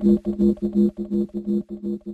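Electronic dance track with the drums dropped out, leaving a pulsing synthesizer chord that repeats about five times a second and slowly fades.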